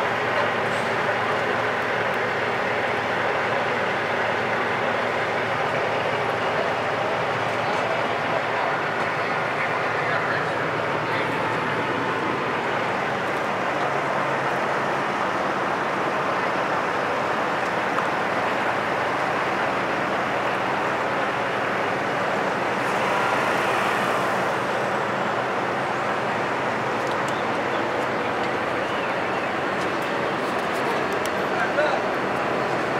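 Steady running of an idling truck engine, with people talking faintly behind it.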